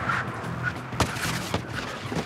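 Background music over a Volkswagen Golf braking hard from about 60 mph on a tarmac circuit, with a steady low hum and several sharp clicks.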